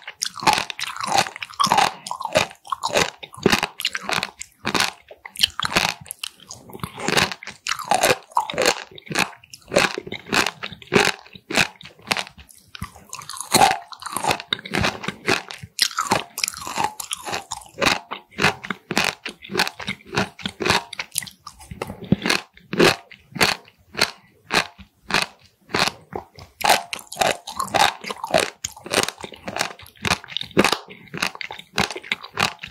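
Close-miked chewing of raw Styela plicata (warty sea squirt): a continuous run of crunchy bites, several a second, as the tough, bumpy skins are chewed.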